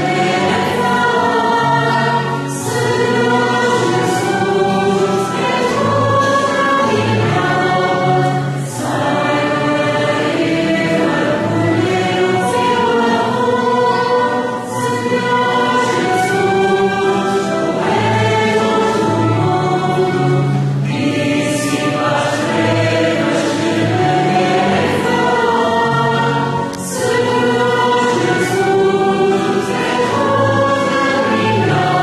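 Many voices singing a hymn together in sustained phrases, with a short break between phrases every five or six seconds.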